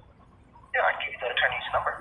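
A voice on the other end of a phone call, heard through the phone's speaker and sounding thin and narrow. It starts after a short pause, about three-quarters of a second in.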